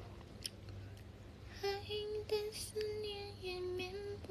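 A young woman humming a short wordless tune softly, starting about one and a half seconds in, with a run of held notes that step up and down in pitch.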